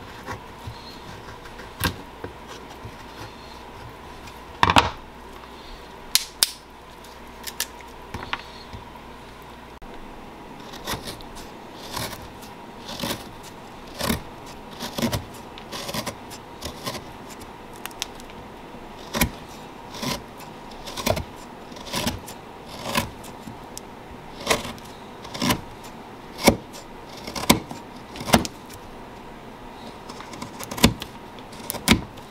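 Kitchen knife shaving dried sassafras root into curls, each stroke a short, crisp cut. The strokes are sparse at first, then come about one a second from about ten seconds in.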